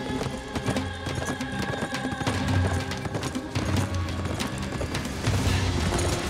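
Background music with held low notes over the rapid hoofbeats of a herd of galloping horses.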